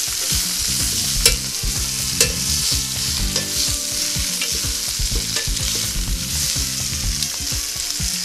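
Spinach sautéing in melted butter in a hot pan: a steady sizzle, with the stirring utensil clicking against the pan, twice sharply in the first few seconds.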